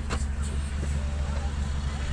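Car engine idling: a steady low hum heard from inside the cabin.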